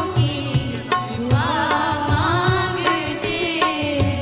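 Female voices singing a Hindi film song together with a live orchestra, over a steady drum beat of about two strokes a second.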